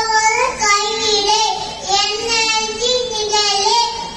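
A young child chanting Tamil verses in a sing-song voice into a microphone, drawing out long, slightly wavering notes in short phrases.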